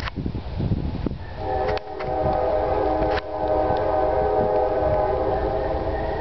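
A horn sounds one long, steady chord of several tones. It starts about a second and a half in and holds through the rest, over a low rumble.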